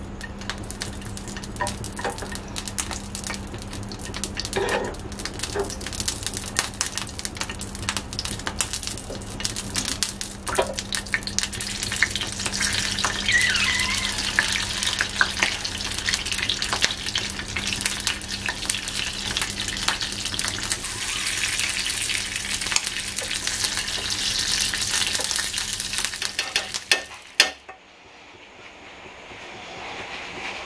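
Cherry tomatoes sizzling and crackling in hot oil in a frying pan, with small knocks of a wooden spatula moving them. The sizzle grows louder about halfway through and cuts off suddenly near the end.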